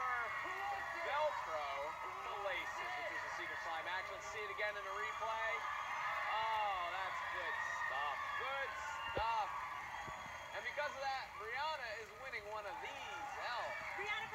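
Game-show audio played through a laptop's speakers: overlapping excited voices shouting and squealing with no clear words, the reaction to a panelist being drenched in slime.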